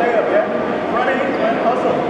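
Basketballs bouncing on a gym floor under a man speaking and other voices, all echoing in a large hall, with a steady din throughout.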